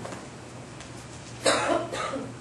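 A woman coughing once into a handheld microphone, about one and a half seconds in.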